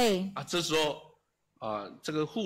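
Speech only: a person speaking, with a short pause a little past the middle.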